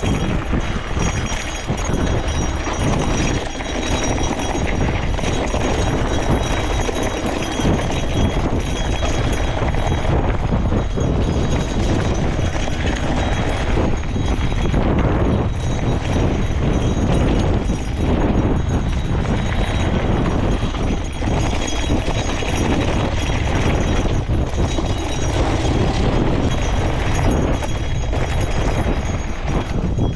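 Norco Search XR steel gravel bike riding down a rough dirt trail: tyres crunching over gravel and rocks and the bike rattling with many small knocks, over a steady low rumble of wind on the microphone.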